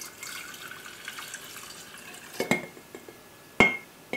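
Warm water pouring from a glass measuring cup into a large empty glass jar, a steady splashing for about two and a half seconds. A light tap follows, then near the end a single sharp, ringing knock of glass.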